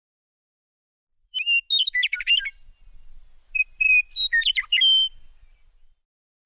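Bird song: two short phrases of quick chirps and whistled notes, the first starting a little over a second in and the second about a second after the first ends.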